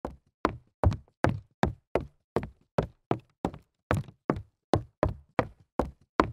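A steady series of sharp knocks, about two and a half a second, each dying away quickly.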